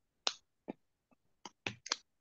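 Half a dozen sharp clicks or taps at irregular spacing, with the loudest about a quarter-second in and a quick cluster of three near the end.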